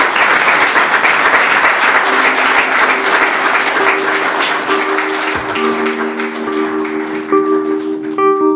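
Audience applause, fading out as soft music with long held notes comes in about two seconds in and is left on its own near the end.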